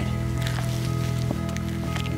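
Background music with sustained low notes, under faint footsteps of hiking boots on bare sandstone.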